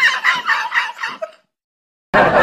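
High-pitched cackling sound effect: a quick run of short, repeated calls that fades out about one and a half seconds in.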